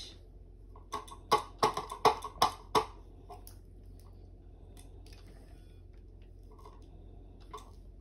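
A quick run of about six sharp clicks over roughly two seconds, about a second in, then only faint room hum.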